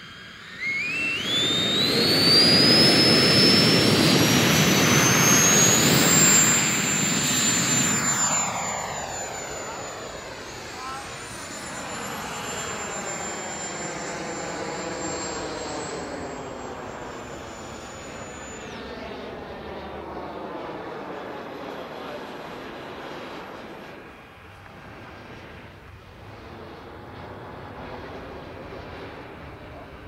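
Electric ducted-fan (impeller) motor of a Stingray Energy RC model spooling up to full power: a loud rush with a whine that climbs steeply for about six seconds, then holds high and steady. After about eight seconds the sound drops and fades as the model flies off, and the whine stops about eighteen seconds in.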